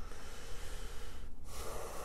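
A man breathing close to a clip-on lapel microphone: a soft breath, a short break about a second and a half in, then another breath.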